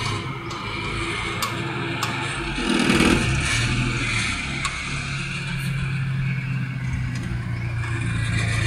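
A Toyota sedan's engine running at low revs as the car creeps forward out of a parking bay, with a brief rise in engine noise about three seconds in.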